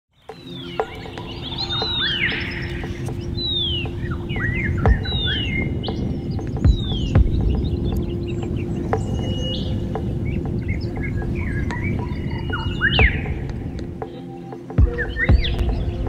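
Wild birds calling at Mt Arapiles, with repeated falling whistles and chirps, laid over background music of low sustained notes and a few deep hits.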